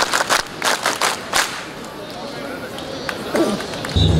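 A large group of festival bearers clapping in unison in the ceremonial tejime pattern: two sets of three sharp claps, then a single closing clap about a second and a half in. Crowd chatter follows.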